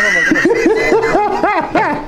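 A man laughing: a quick run of short rising-and-falling laughs, about five or six a second.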